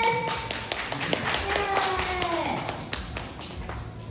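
Rhythmic clapping along, about four to five sharp claps a second, fading toward the end. A child's sung note is held through the middle and slides down in pitch.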